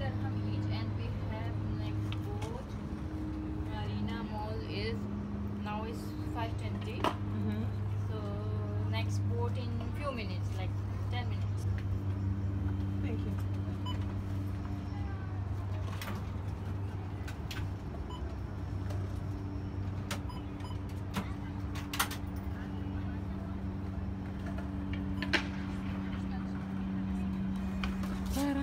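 A steady low machine hum, with a few sharp single clicks scattered through it.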